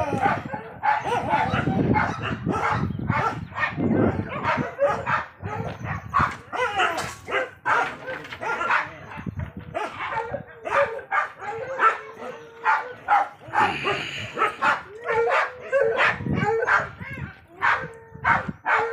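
Dogs barking over and over, in short barks following one another in quick succession.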